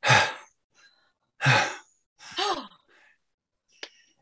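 A person laughing breathlessly: three short, breathy exhaled bursts about a second apart, one with a falling voiced 'ooh' in it, then a sharp click near the end.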